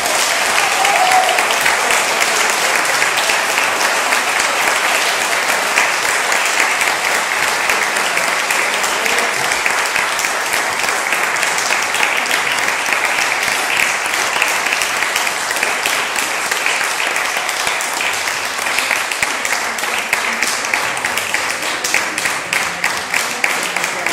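Audience applauding steadily, a dense clatter of many hands clapping. Near the end it thins into more separate claps.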